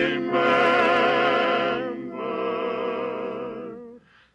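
A male barbershop quartet sings unaccompanied in close harmony, played from a vinyl LP. They hold a long chord with vibrato, move to a second held chord about two seconds in, and let it die away just before the end.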